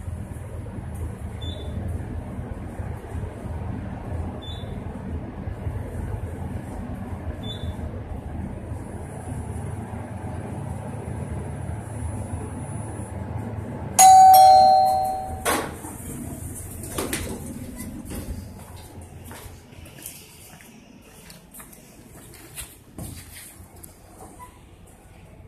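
Otis traction elevator cab travelling down with a steady low rumble, a short high beep sounding about every three seconds as it passes floors. About 14 s in, a loud two-note falling chime signals arrival, followed by clattering from the doors opening.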